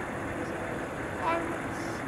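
Steady, distant jet engine noise from Air Force One, a twin-engine jet on final approach to land, with people's voices in the background.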